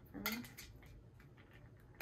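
Faint small plastic clicks and taps from the push-button lid of a child's insulated straw cup being pressed and worked by hand, the button sticking and not opening. A brief voice sound comes just after the start.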